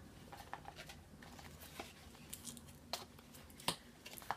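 Faint rustling and light clicks of a cardboard perfume box being handled and opened, with a couple of sharper clicks near the end.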